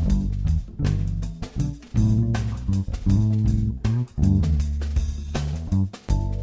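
Electric bass guitar playing a line of held low notes over a drum track, in a multitrack music mix.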